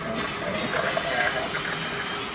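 Spirit Halloween Miss Mercy animatronic running its head-spin: a crunching neck sound as the head turns.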